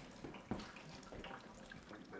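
Faint trickle and drip of water falling through a hole in a drywall ceiling: water leaking down from a plugged, flooded shower pan above. There are small knocks, about half a second in.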